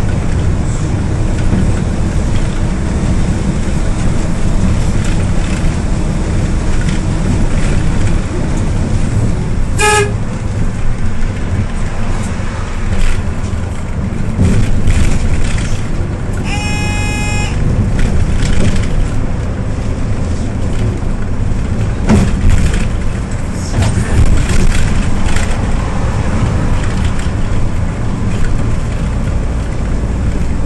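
Hyundai New Super Aerocity city bus driving on the road, its engine and road noise heard from inside the cabin as a steady low rumble. A very short beep sounds about ten seconds in, and a higher beep about a second long a little past halfway.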